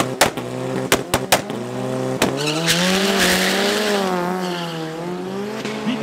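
Two Volkswagen drag cars, a red Golf Mk1 and a white saloon, at the start line. For the first two seconds there are sharp bangs as an engine is held at high revs. About two seconds in the cars launch: the engine note rises as they accelerate away, then dips and climbs again through the gear changes.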